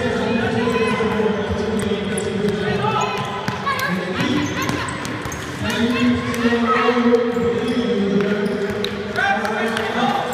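A basketball bouncing on a gym floor with many short knocks, among overlapping voices that echo in a large hall.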